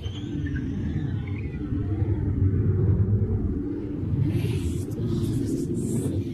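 A continuous low rumble.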